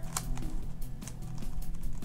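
DaYan NeZha 5M 5x5 magnetic speed cube having its layers turned by hand, giving a run of light plastic clicks as the pieces snap into place under the strong magnets.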